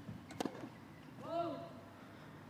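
A tennis racket strikes the ball on a serve, a single sharp crack. About a second later comes a short vocal sound that rises and falls in pitch.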